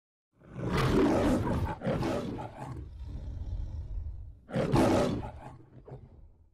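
The MGM logo's lion roar: a loud roar and a shorter one, then a quieter rumbling stretch. A second loud roar begins about four and a half seconds in and fades away.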